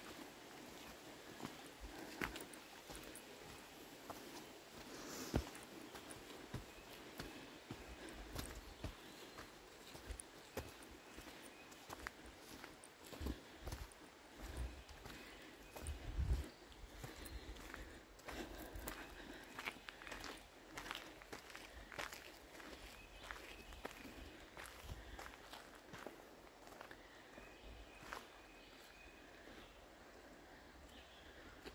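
Footsteps of people walking on a dirt forest trail with roots and stones: irregular soft steps, with a few low thumps on the microphone, the strongest about halfway through.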